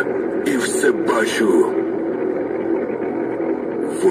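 Speech: a voice reciting poetry, continuing without a pause.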